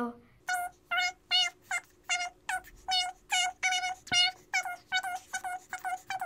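A child's voice counting off numbers fast, sped up to a high, chipmunk-like pitch, about two to three numbers a second, with a faint steady tone underneath.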